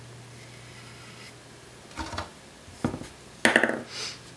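Quiet tabletop handling over a steady low hum: a few light knocks and clatters, the loudest near the end, as a paintbrush is set down on the table and a paint sponge is picked up.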